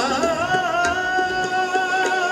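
Sikh kirtan: a male voice holds one long sung note, wavering briefly at its start and then steady, over harmonium accompaniment.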